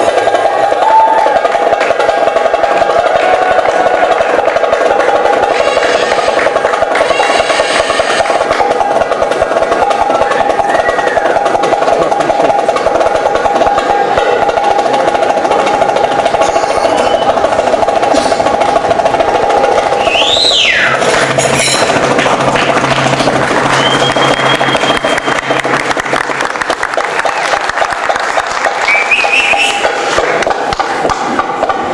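Live Middle Eastern belly-dance music: fast darbuka hand-drumming over a steady held tone. About twenty seconds in, a high sliding tone swoops up and back down, and a high held note follows.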